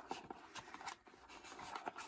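Faint rubbing and light scraping of paper and cardboard as hands grip and shift an album's cardboard sleeve, with a few small clicks.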